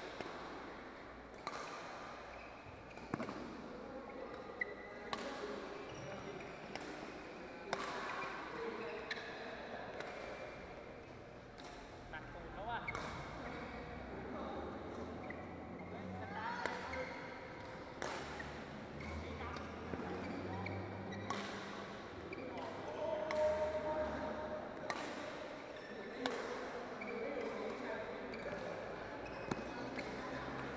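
Badminton rackets striking a shuttlecock in a doubles rally: sharp hits about every second or so, with voices in the hall underneath.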